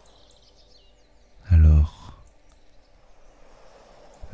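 Faint birdsong chirps over a soft, steady wash of sea waves. About one and a half seconds in, a single short, low-pitched voice sound, like a murmured syllable, is the loudest thing.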